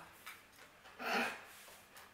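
A single short, breathy sound from a person about a second in, such as an exhale or nasal sound while eating, with a quiet room otherwise.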